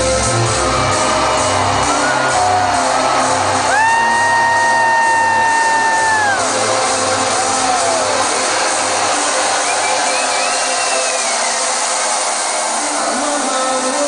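Live trance DJ set at a breakdown: the deep bass thins out within the first few seconds while the crowd cheers and whoops over the music, with one long held scream about four seconds in and shorter whoops around it.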